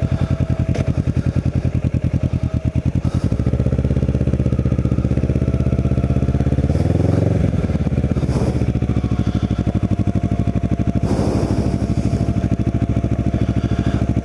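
Kawasaki Ninja 650R's parallel-twin engine running at low revs. The revs climb a little from about four seconds in and drop back sharply just past seven seconds.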